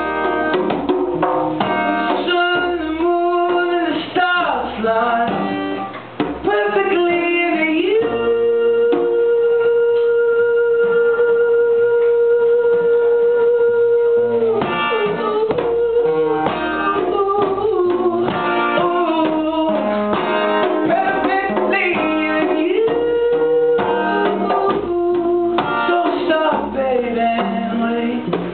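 A man singing live to his own strummed acoustic guitar. Midway through he holds one long note for about six seconds before the melody moves on.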